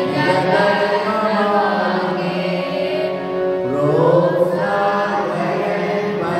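Devotional singing of a suprabhatam, a Sanskrit morning hymn, in a slow chant-like melody with long held notes, a new phrase starting a little past the middle.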